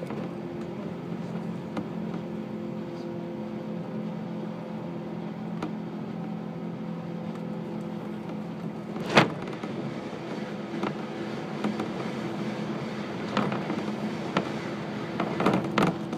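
Cabin noise of a 185 series electric train running along the line: a steady rumble with several held humming tones. A single sharp clack about nine seconds in, and a run of smaller clacks near the end.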